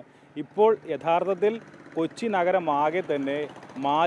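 A man talking in Malayalam into a handheld microphone, after a short pause at the start.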